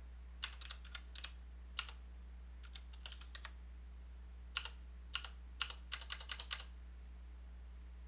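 Keystrokes on a computer keyboard in short irregular runs, stopping about a second and a half before the end, over a low steady hum.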